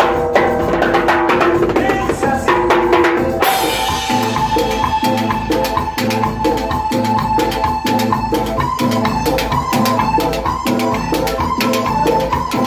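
Live cumbia sampuesana on keyboard and timbales, the timbales struck with sticks. About three and a half seconds in a bright crash comes in, and the band settles into a steady, evenly repeating rhythm under held keyboard notes.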